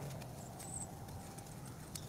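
Faint scraping and rustling of a hand trowel digging into soil and dry leaf litter, with a few light clicks.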